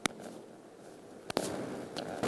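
Handheld microphone being handled as it is passed along: two sharp knocks, one at the start and one a little over a second in, the second followed by brief rubbing noise.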